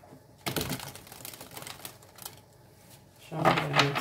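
A deck of tarot cards being shuffled by hand: a quick flurry of card clicks lasting about two seconds, followed by a short lull.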